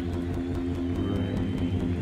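Live rock band music with guitar and bass holding long, sustained notes over a low drone, and a fast steady ticking beat high above.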